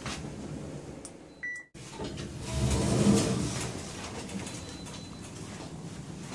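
Hotel lift arriving: a short electronic chime about one and a half seconds in, then the lift doors sliding open with a low rumble that swells and fades around the three-second mark.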